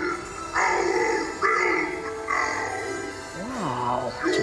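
A giant Distortions Unlimited animatronic monster speaking its recorded voice lines in a deep, processed voice over spooky background music, with a low voice sliding up and back down near the end.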